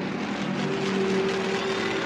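Engines of several small propeller planes flying in formation, a steady hum that swells slightly about half a second in.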